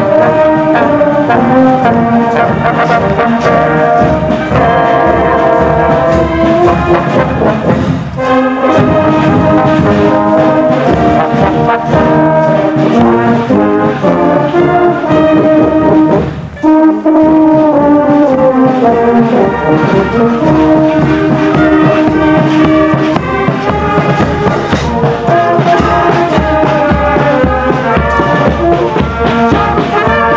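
A wind band of tuba, flugelhorns, clarinets and bass drum playing while marching, with a steady drum beat and a brief break between phrases about seventeen seconds in.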